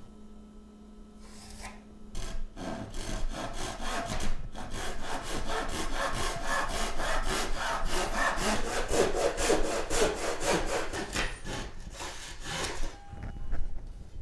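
Handsaw cutting across a pine board in quick, even strokes, starting slowly and stopping shortly before the end as the cut goes through.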